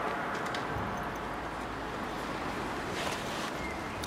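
Steady roadside background noise, a low hum and hiss such as distant traffic and light wind make, with a few faint clicks.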